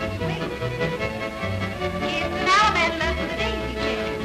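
Lively square dance music with a steady beat, its lead line wavering and bending around two and a half seconds in.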